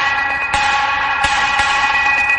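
Minimal techno from a DJ mix: a held, bell-like chord of several steady tones, with sharp percussion hits falling about three times in two seconds.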